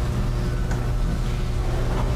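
Steady low rumble and hum of the room's background noise, with no speech.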